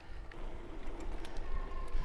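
Wind rumbling on the microphone of a handlebar-mounted camera on an electric bike in motion, with faint ticks of the bike rolling over the trail. A faint steady whine comes in about three-quarters of the way through.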